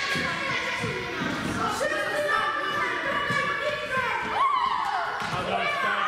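Indistinct children's voices and calls echoing in a large sports hall, with a few short knocks from plastic floorball sticks and ball on the floor.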